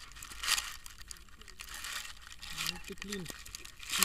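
Grass rustling and crackling against an action camera lying in it, with a louder swish about half a second in and small scratchy clicks throughout.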